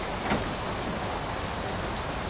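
Steady rushing noise of a whoosh sound effect over a time-travel transition, with a slight swell about a third of a second in.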